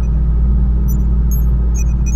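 Sound-designed intro effect: a loud, steady, deep rumbling drone with short electric crackles and zaps breaking in a few times near the middle and end.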